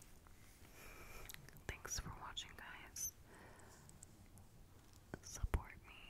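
A woman whispering close into the microphone, with a few sharp clicks and taps between the phrases; the loudest click comes near the end.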